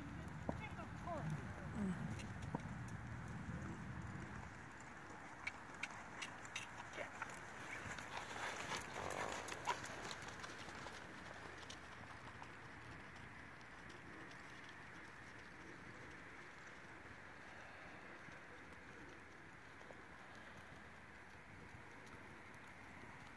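A horse trotting on a sand arena: faint, soft hoofbeats, with a run of light clicks between about five and ten seconds in, then fainter.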